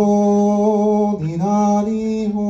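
A man singing long held notes without words into a microphone, chant-like; the pitch drops briefly a little past a second in, then comes back up.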